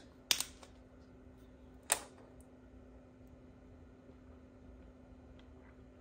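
Steady low hum of a running mini fridge, with two sharp clicks from handling, about a third of a second and about two seconds in.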